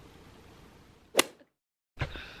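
Faint room tone, then a single sharp click about a second in, followed by half a second of dead silence.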